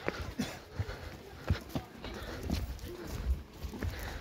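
Footsteps on stone steps: irregular short taps and scuffs, roughly two a second, over a low rumble, with faint voices in the background.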